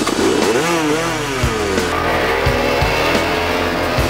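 Dirt bike engine revving, its pitch swinging up and down several times in the first two seconds, then running steadier.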